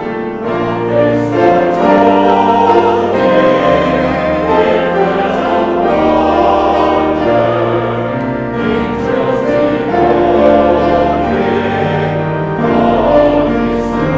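A church choir sings a Christmas hymn verse in slow, sustained chords, accompanied by piano.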